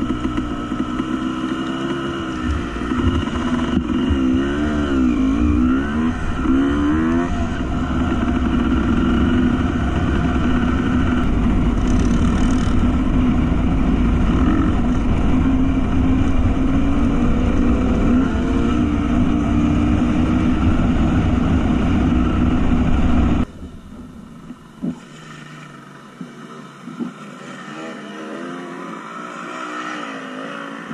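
Dirt bike engine running under changing throttle, its pitch rising and falling. About 23 seconds in the sound drops suddenly to much quieter and the low rumble cuts out.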